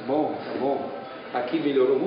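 Speech only: someone talking, with no other distinct sound.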